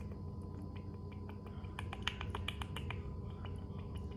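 Small sharp clicks and ticks as hot sauce is shaken drop by drop from an upturned bottle into a small cup, with a quick run of them about two seconds in. A steady low room hum runs underneath.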